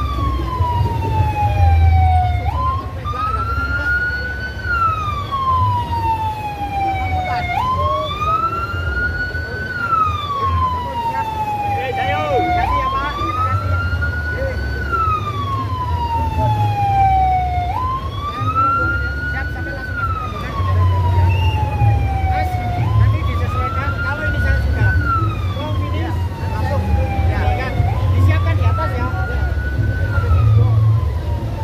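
A siren wailing in slow cycles about every five seconds: each cycle jumps up, climbs briefly, then glides down in pitch. Under it runs a deep, loud, uneven low rumble.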